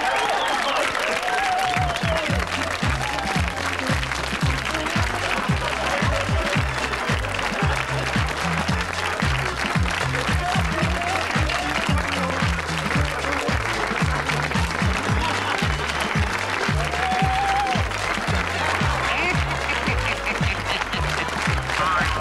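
Studio audience applauding over upbeat music; the music's steady bass beat comes in about two seconds in and keeps going under the clapping.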